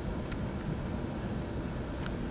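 Steady low room noise in a lecture room, with a couple of faint clicks.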